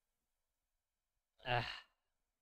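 A man's short, breathy 'ugh' of frustration about a second and a half in, after silence.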